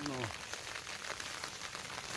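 Steady rain falling, a dense run of small drop ticks over an even hiss.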